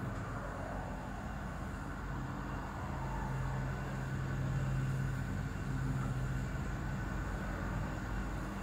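Steady low background noise with a faint low hum that comes in about two seconds in and fades out near six and a half seconds.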